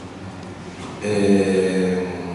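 Low room noise, then about a second in a man's voice holds one long vowel at a level pitch, a drawn-out hesitation sound between phrases of speech.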